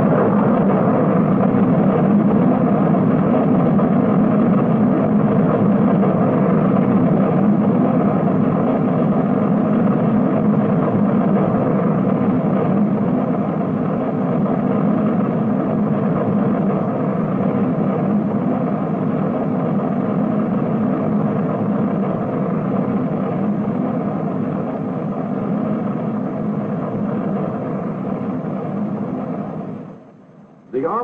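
Jupiter ballistic missile's 150,000-pound-thrust rocket engine at launch, a loud continuous roar that slowly fades over the half minute and then cuts off abruptly. It is heard through an old film soundtrack with no high end.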